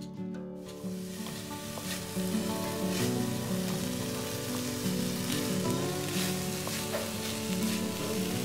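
Chopped ivy gourd stir-fry sizzling in a metal kadai as a wooden spatula stirs it, with a few short scrapes against the pan; the sizzling starts about a second in. Soft background music plays underneath.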